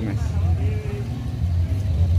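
Street ambience: a steady low rumble, with a faint voice in the background.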